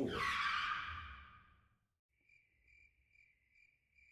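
A long breath blown out through pursed lips, fading away over about two seconds. Then a cricket chirps steadily, about two or three chirps a second: the stock 'crickets' cue for an awkward silence.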